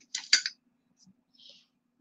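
Costume jewelry being handled: a quick cluster of light clinks and rattles in the first half second, then a faint tick and a soft rustle.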